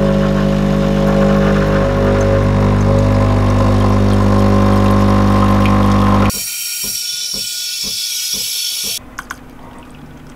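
Espresso machine's pump humming loudly and steadily while a shot runs into the cups. About six seconds in it gives way abruptly to a steam wand hissing with a regular sputter, about three pulses a second, which stops about a second before the end.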